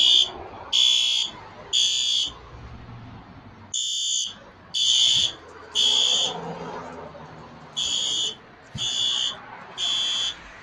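Fire alarm beeping high-pitched in the temporal-three evacuation pattern: three beeps about a second apart, a short pause, then the next set of three, repeating.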